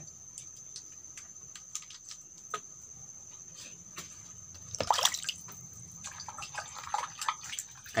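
Liquid dripping and splashing a little as a plastic dipper is dipped into and lifted out of a bucket, loudest about five seconds in, with small handling clicks around it.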